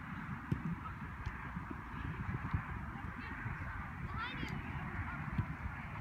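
Sports-field ambience: distant players' voices and play carry across the field over a low irregular rumble, with a few short, high rising calls about four seconds in.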